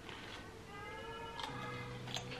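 A cat meowing once, a short meow about a second in, over a faint steady hum.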